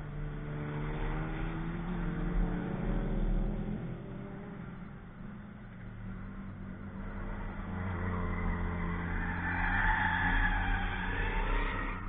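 Race cars lapping a circuit: an engine revving and shifting early on, fading briefly, then another car's engine and tyre noise getting louder, loudest near the end.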